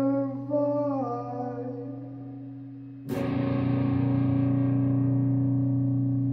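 Song with a steady low drone under it: a held note bends downward and fades over the first three seconds, then a distorted electric guitar chord is struck about three seconds in and left ringing.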